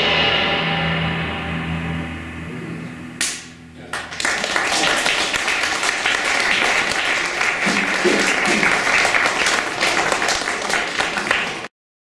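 The final chord of a jazz trio, with electric guitar, electric bass and cymbal, rings out and fades. From about four seconds in the audience applauds, and the applause cuts off abruptly near the end.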